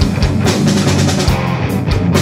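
Death metal band playing an instrumental passage: electric guitars riffing over a drum kit, with regular kick drum strokes and cymbal hits.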